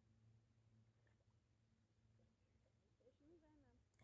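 Near silence, with a faint steady low hum and a faint warbling pitched sound about three seconds in.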